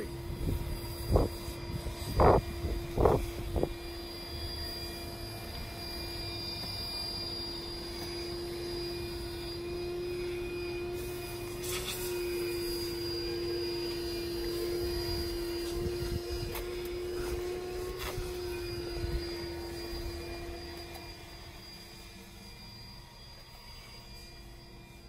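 A steady mechanical hum on one held pitch, with a few sharp knocks in the first few seconds; the hum fades near the end.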